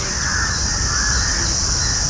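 Outdoor nature ambience: a steady high-pitched drone, with faint bird calls and a low rumble underneath.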